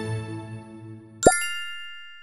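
Background music fading out, then about a second in a quick rising pop followed by a bright chime of several ringing tones that slowly dies away: a logo sound effect.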